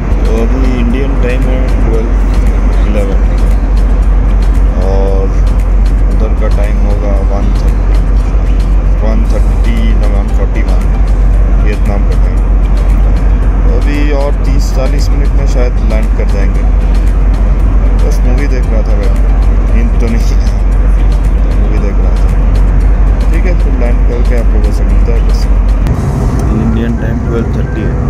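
Loud, steady low rumble of a jet airliner's cabin in flight, with a voice speaking over it. The rumble changes character near the end.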